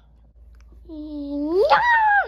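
A child's voice letting out one drawn-out, wordless cry that starts low about a second in, climbs sharply in pitch and holds high near the end.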